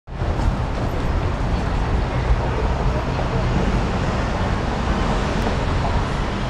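City road traffic: a bus and cars driving past on the street below, a steady low rumble of engines and tyres.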